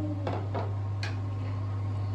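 A few light clicks of small drinking glasses and tableware being handled on a dining table, all in the first second, over a steady low hum.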